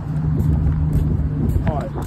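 Steady low engine hum of a motor vehicle running nearby, with a voice starting up near the end.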